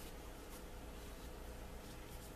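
Faint scratchy strokes of a dye dauber rubbed along the edges of a leather holster, a few short strokes over a steady low hum.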